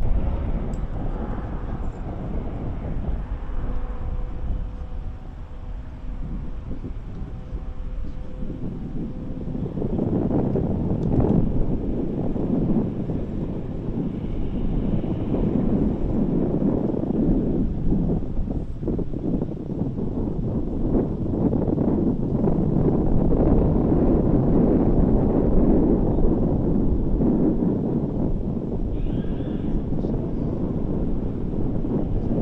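Wind buffeting an outdoor camera microphone, rumbling in uneven gusts that grow louder about ten seconds in. A faint steady hum sits under it for the first several seconds.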